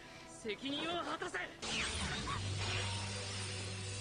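Film soundtrack: a character's shouted line of dialogue, then about a second and a half in a sudden rush of noise like a crash, giving way to a low steady drone under the score.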